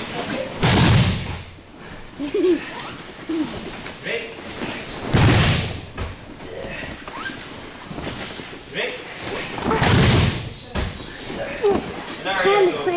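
A group of judoka doing breakfalls together, slapping and landing on the tatami mats: three loud thuds a few seconds apart, each slightly ragged because the class does not land quite in unison. Faint voices carry on between the falls.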